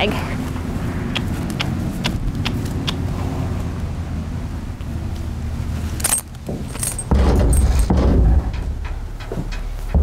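A low steady rumble, then about seven seconds in a horse's hooves clunking as it steps its front feet up onto a stock trailer's floor, with metal halter and lead-rope hardware jingling.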